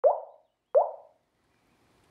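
Two water-drop plop sound effects about three quarters of a second apart. Each slides quickly upward in pitch and dies away within half a second.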